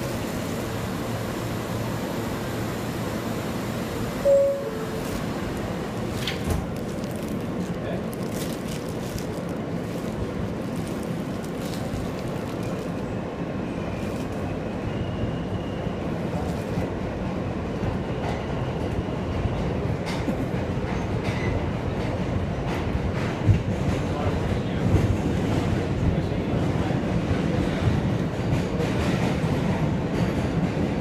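Inside an R160A subway car: a short two-tone chime about four seconds in as the doors close, then the train pulls out of the station, its motor and wheel noise building and growing louder in the second half as it runs through the tunnel.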